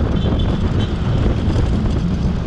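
Wind buffeting the microphone over the steady low rumble of a vehicle driving along a road.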